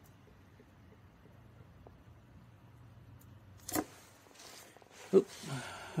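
Faint room tone with a low steady hum, then a single sharp knock just before four seconds in as the plastic oil-additive bottle is handled at the end of the pour, followed by a brief rustling hiss.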